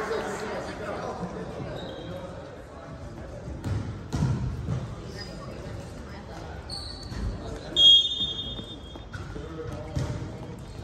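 Volleyball gym during a break in play: a ball thudding on the hardwood floor a few times and sneakers squeaking, over low chatter from players and spectators. The loudest sound is a short, high-pitched squeal about eight seconds in.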